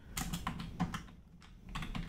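Typing on a computer keyboard: a quick, irregular run of key clicks that pauses briefly a little past the middle, then resumes.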